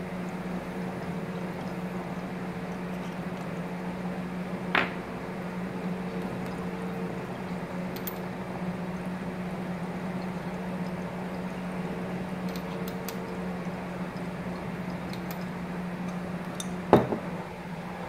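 Water bubbling in a glass dab rig as a long hit is drawn through it, over a steady low hum. A sharp knock comes near the end.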